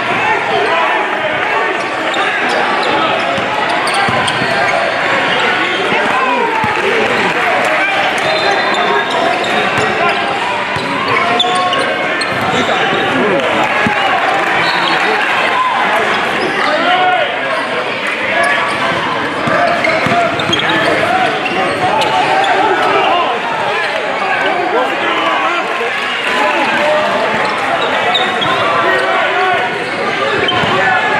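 Live sound of a basketball game in a gym: the chatter of many voices throughout, with a basketball bouncing on the court floor.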